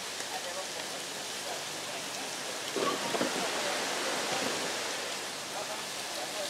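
A steady rushing noise, with faint voices in the background and a brief louder sound about three seconds in.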